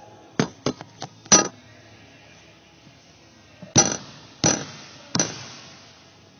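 A quick cluster of sharp knocks, then a leather basketball bounced three times on a hardwood gym floor, about two-thirds of a second apart, each thud echoing in the gym.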